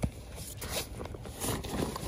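Rustling and scraping of a fabric baseball bag as a hard plastic batting helmet is pulled out of it, with a few light knocks.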